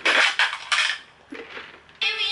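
A quick run of clattering knocks of hard objects over about the first second, followed by a short, softer low sound.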